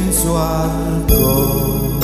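A man sings a slow Javanese hymn line over an electronic arranger keyboard playing sustained chords, bass and a programmed drum beat. A drum hit lands about a second in.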